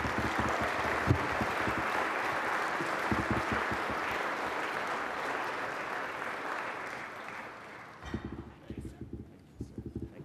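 Audience applause in a large banquet hall, a steady clatter of many hands that fades out over the last few seconds.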